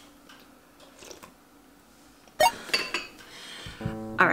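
Spoon clinking against a ceramic soup bowl: faint small taps, then one sharp ringing clink about two and a half seconds in, followed by a few lighter clinks.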